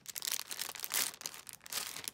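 Clear plastic packaging bag crinkling as hands handle it: a dense run of crackles, loudest about a second in.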